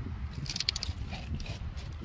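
Wind rumbling on the microphone, with a brief cluster of small clicks and scratches about half a second in.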